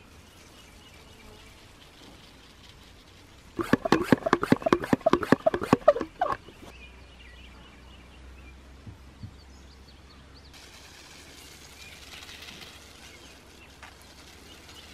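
Hand-pump garden sprayer being pumped up: a quick run of about a dozen pump strokes over nearly three seconds. Later comes a faint hiss of spray from the wand nozzle, over faint outdoor background.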